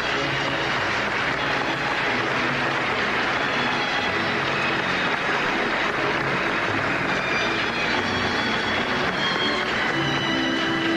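Audience applauding steadily over orchestra music.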